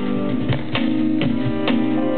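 Live band playing an instrumental passage: acoustic guitar strummed in a steady rhythm over held low chord notes.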